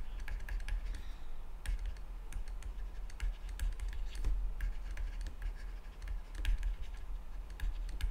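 Stylus tapping and scraping on a tablet screen during handwriting: a run of light, irregular clicks over a low steady hum.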